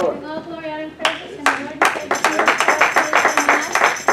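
A church congregation clapping in a steady rhythm with music between speakers. A held, wavering note sounds in the first second before the clapping comes in.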